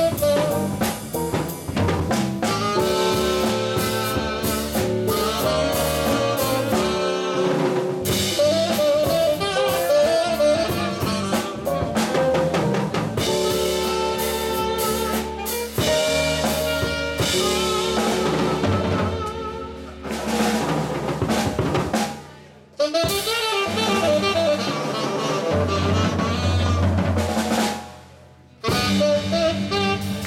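Live jazz combo playing, with the drum kit to the fore: snare, rimshots, cymbals and bass drum over electric bass, keyboard and saxophone. The band cuts out briefly twice, once about three-quarters of the way through and again near the end.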